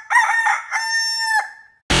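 Rooster crowing cock-a-doodle-doo as a next-morning sound effect: a few short notes, then one long held note that cuts off about a second and a half in.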